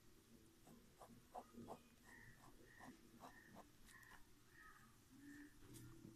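Near silence, with faint scratches of a ballpoint pen drawing on paper.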